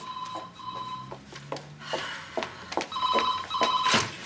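Desk telephone ringing in the British double-ring pattern: a pair of short rings at the start and another pair about three seconds later, with small knocks and clicks of movement in between.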